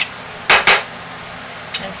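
Two quick, sharp clinks of hard kitchenware being handled, about a fifth of a second apart.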